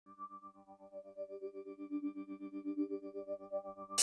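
Instrumental music: a soft, sustained synthesizer chord pulsing quickly and evenly, gradually growing louder as the song fades in.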